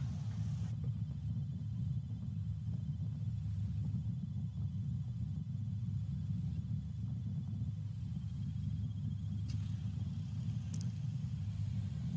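A light aircraft's piston engine and propeller running with a steady low rumble, without revving.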